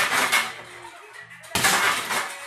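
Rapid flurries of punches on an RDX heavy punching bag: a burst of quick strikes at the start and another starting about a second and a half in.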